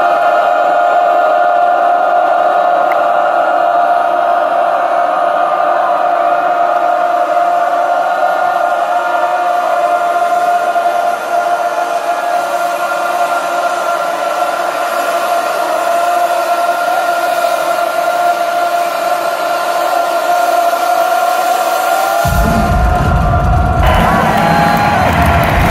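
Live band music over an arena PA: one long held tone that runs for about twenty seconds, with a heavy bass entering near the end.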